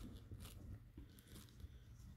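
Near silence, with faint rustles and light ticks of a bungee cord being threaded by hand through a magazine pouch's retention tabs.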